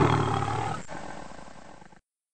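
The tail of a deep, rough roar sound effect dying away, fading out to silence by the end.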